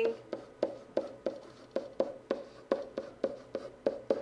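A pen writing on a hard writing surface, a quick series of short taps and strokes about three a second as an equation is written out.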